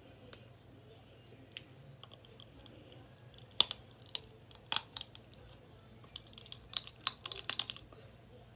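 Crab-leg shells being cracked by hand and bitten, with close-up eating mouth sounds: scattered sharp clicks and snaps starting about three and a half seconds in and coming thick and fast near the end.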